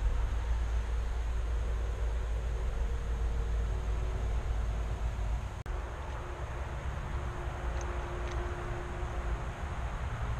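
Wind buffeting the microphone outdoors: a steady low rumble with a hiss over it. It dips briefly about halfway through, and a couple of faint ticks come near the end.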